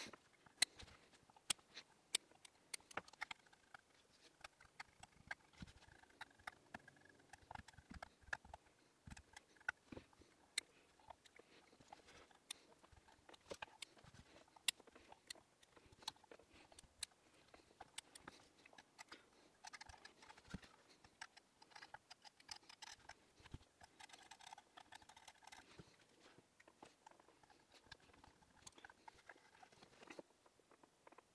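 Faint scattered small clicks, ticks and rustles of hands handling cotton wick on a rebuildable atomizer, threading it through the coils and trimming it with scissors.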